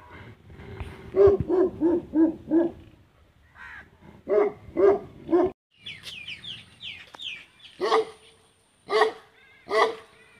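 A dog barking in quick runs: about five barks, a pause, four more, then three spaced barks near the end. A bird chirps briefly in between, about six seconds in.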